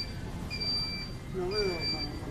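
Electric mobility scooter's reversing warning beeper as it backs up: a high electronic beep about half a second long, repeating about once a second, sounding twice here.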